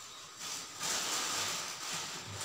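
Dry rustling hiss of long hair being twisted and handled close to the microphone, swelling about a second in.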